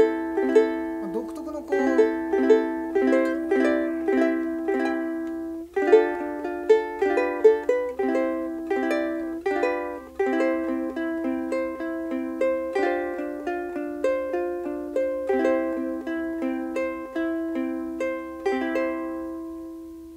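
Kiwaya KPS-1K soprano ukulele with a Hawaiian koa body, plucked in a melody with chords and a very clear, clean tone. It pauses briefly about six seconds in, and the last chord rings out and fades near the end.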